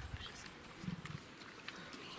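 Leopard giving a faint, low, rasping growl: the tail of a louder growl fades at the start, then a short low growl comes about a second in.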